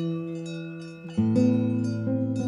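Acoustic guitar playing slow chords: one chord rings and fades, and a new chord is struck about a second in.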